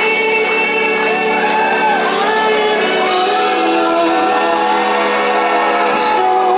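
Indie rock band playing live in a hall, in a breakdown: a sung vocal line over sustained chords, with the drums and bass dropped out.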